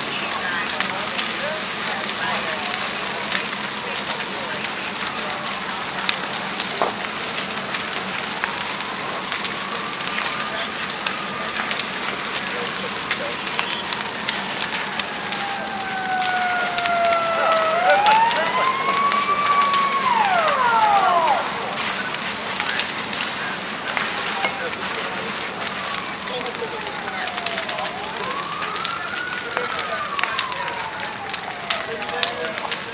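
A fully involved wood-frame house fire crackling, with many sharp pops throughout. From about eight seconds in, sirens wail with slow rising and falling pitch, two overlapping and loudest a little past the middle, and another rising near the end.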